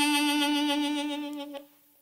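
Custom Hohner Golden Melody harmonica with solid sterling silver cover plates, playing one long held note with a wavering vibrato. The note fades and stops about one and a half seconds in.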